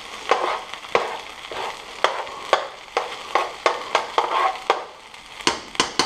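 Metal spoon scraping and knocking irregularly against a Teflon-coated frying pan as it pushes fried rice aside into a well, with the rice frying in the pan.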